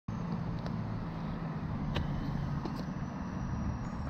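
Steady low rumble of road traffic, with a few light clicks over it.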